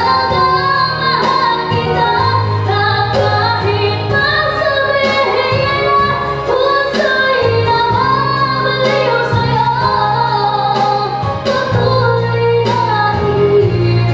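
A girl singing a song into a microphone over instrumental accompaniment with a steady beat and sustained bass notes.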